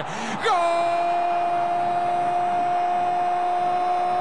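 A man's voice holding one long shouted note at an unwavering pitch, starting about half a second in: a football commentator's drawn-out cry after a goal.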